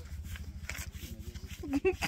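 People talking in the background over a low, steady rumble, with short, louder bits of speech near the end.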